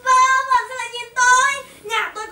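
A child's high voice crying out in four drawn-out, sing-song exclamations, each held on one steady pitch with short breaks between.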